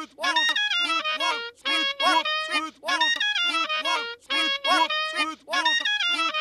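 A looped stretch of cartoon soundtrack: quick, choppy pitched syllables and short held reedy notes, cut into a jerky pattern that keeps repeating.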